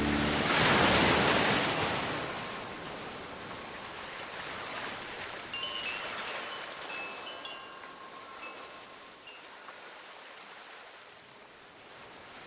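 A rush of surf swells in the first couple of seconds and slowly fades, with wind chimes tinkling lightly a few times over it.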